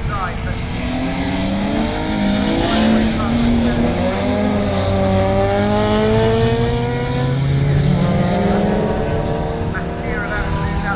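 Several touring car engines at racing speed passing through a corner on a wet circuit, their overlapping engine notes rising and falling as the drivers brake, shift and accelerate, over a steady rushing noise.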